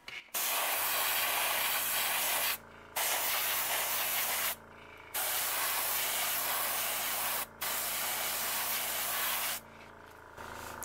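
Airbrush spraying paint onto a fishing lure in four hissing passes of about two seconds each, with short pauses between, over a steady low hum.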